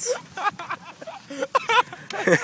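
People laughing hard, in broken bursts.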